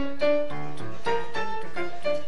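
Piano being played: a melody of about three notes a second over held bass notes.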